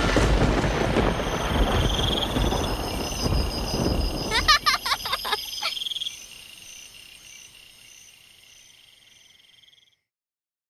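Night ambience of crickets chirping and frogs croaking, dense for about six seconds and then fading away. A quick run of rising chirps comes about four and a half seconds in.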